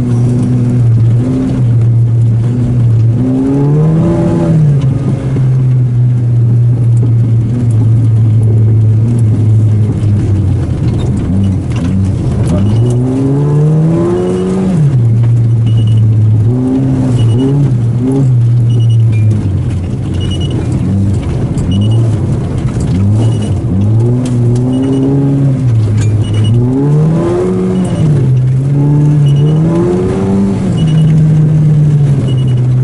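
Volkswagen Golf GTI's four-cylinder engine heard from inside the cabin, revving up and dropping back again and again as the car is driven through bends and gear changes on a snowy road. From about a third of the way in, short high beeps repeat roughly once a second over the engine.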